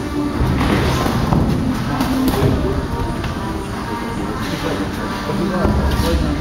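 Background music with several dull thuds on top: gloved punches and boxers' footsteps on the ring canvas.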